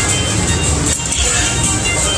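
Dragon Link Panda Magic slot machine's bonus-round music playing loudly and continuously during its free spins, as the next free spin sets the reels spinning.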